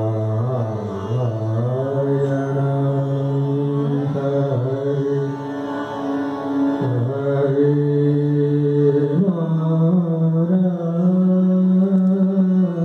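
A man singing an Indian devotional song in slow, long-held notes that glide from one pitch to the next, with instrumental accompaniment.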